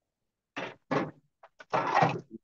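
Short bursts of rustling, scraping noise coming through a video-call microphone, the loudest near the end.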